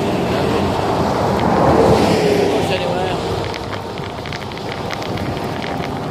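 Road traffic passing on a dual carriageway, heard as a steady rush, with wind blowing over the microphone.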